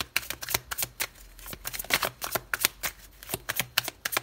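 A deck of tarot cards being shuffled by hand: a quick, irregular run of card clicks and riffles.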